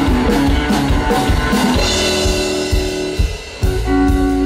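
Rockabilly band music with drum kit and electric guitar, instrumental after a last sung word at the start, with a brief drop in level a little after three seconds.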